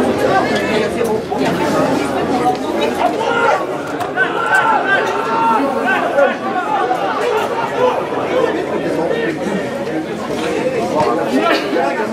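Many voices talking at once: rugby spectators chatting along the touchline, with no single voice standing out.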